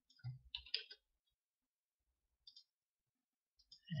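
A few faint computer mouse and keyboard clicks in the first second and one more about halfway through, with near silence around them.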